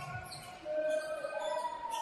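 A basketball being dribbled on a hardwood court during live play, with a thud near the start.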